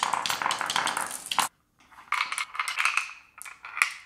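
Steel marbles clicking and rattling against each other and the acrylic marble divider as they are pushed through its channels. The sound breaks off abruptly about a second and a half in, then comes back as marbles rolling and clicking in the channels.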